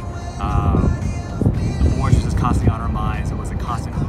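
A man's voice speaking in short phrases over background music, with a steady low rumble underneath like wind on the microphone.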